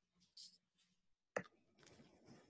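Near silence, broken by one short, sharp click about two-thirds of the way through.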